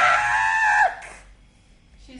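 A young woman's long, high-pitched scream, held at one pitch, cutting off a little under a second in.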